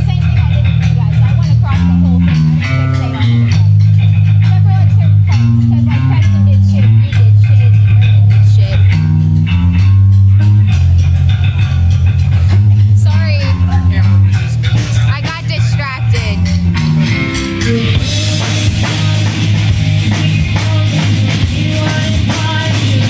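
Rock band playing live, with electric guitar and a heavy bass line carrying the song; about eighteen seconds in the sound turns brighter and fuller as the rest of the band comes in harder.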